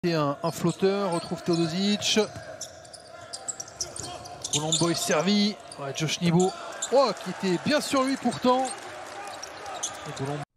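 Basketball dribbled on a hardwood court during live play, its bounces heard as repeated sharp knocks, with the broadcast commentator talking over the game sound.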